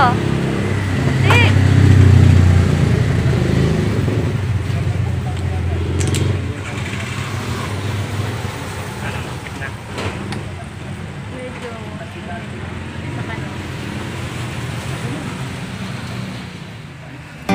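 A motor vehicle's engine rumbling, loudest about two seconds in and then easing off, over steady street traffic noise.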